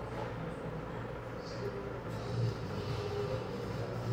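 Steady low hum of the room's background noise, with a man biting into and chewing a burrito.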